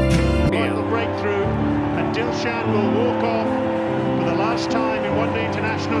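Music with a deep bass stops about half a second in, giving way to a cricket stadium crowd's noise: cheering with scattered sharp sounds over steady held tones.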